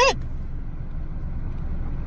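Steady low rumble of a car's engine idling, heard from inside the cabin.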